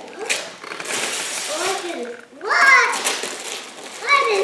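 Wrapping paper rustling and tearing as a present is unwrapped, then a child's voice, rising in pitch and the loudest sound, a little past halfway.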